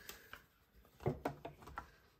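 A few soft knocks and clicks of plastic plates being handled and set down on the platform of a manual die-cutting machine, the firmest about a second in.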